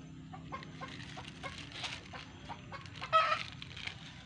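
Chickens clucking in short repeated notes, with one loud squawk about three seconds in.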